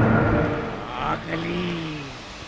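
Film soundtrack sound effects: a heavy rumble from a preceding boom dies away, then a brief voice cries out in the second half.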